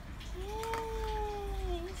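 A long, drawn-out high vocal "ooh" from a person, held for about a second and a half and falling slightly in pitch before the words begin.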